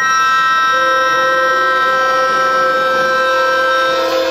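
Harmonica played into a cupped microphone, holding one long, loud chord.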